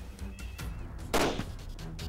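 A single rifle shot about a second in, sharp and brief, over background music.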